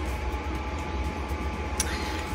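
Steady low background hum with a faint high tone, and a single brief click near the end.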